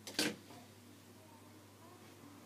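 A single short clatter of handling about a fifth of a second in, over a faint steady low hum.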